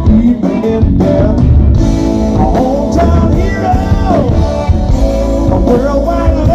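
Live blues-rock band playing loudly: electric guitar, bass and drums, with notes sliding up and down, heard from within the crowd.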